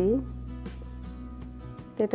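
A voice trails off, then a pause holds faint sustained low notes that shift just before the end, under a steady, faintly pulsing high trill.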